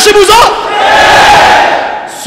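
A large crowd of people shouts together in one loud collective response for about a second and a half, starting just after a man's speech breaks off half a second in.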